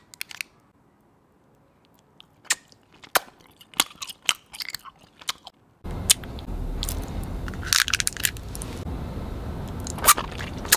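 Close-miked biting and chewing of wrapped candy: sharp crunches and crinkles, sparse at first with quiet gaps. About six seconds in, a steady hiss comes in under more crunching, with a cluster of crinkles near the end.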